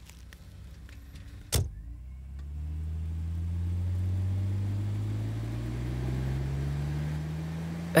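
A single sharp knock about a second and a half in, then a car engine pulling away, its pitch rising slowly and steadily as the car gathers speed.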